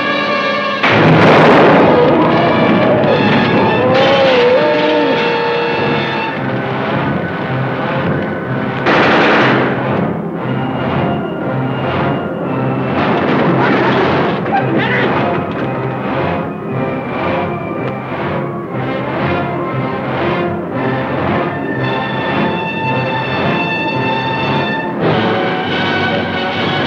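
Dramatic orchestral trailer music, with loud noisy surges about a second in and again around nine seconds, and scattered sharp hits mixed under the score.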